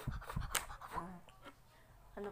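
A few short, breathy puffs as a child blows through a drinking straw onto wet paint to spread it (blow painting), mixed with light clicks.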